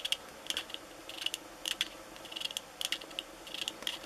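Light clicking and tapping from a small 3D-printed resin model of a KingSong S18 electric unicycle being handled, its parts knocking together in little clusters of clicks about twice a second.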